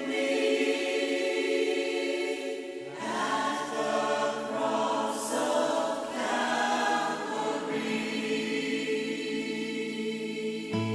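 Hymn introduction of sustained, wordless choir chords, the harmony changing every few seconds.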